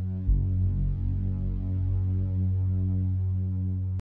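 A low, steady electronic drone, with a deep thud about a third of a second in.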